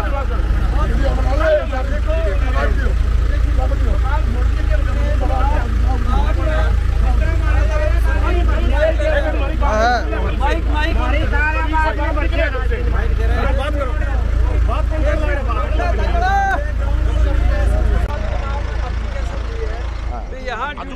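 Several men talking over one another in a heated argument, their voices overlapping, over a steady low rumble.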